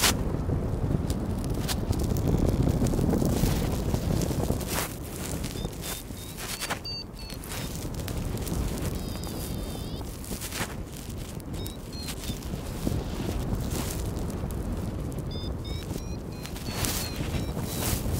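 Wind buffeting the phone's microphone on an open slope, a fluctuating low rumble broken by scattered knocks and rustles, with a few faint high chirps now and then.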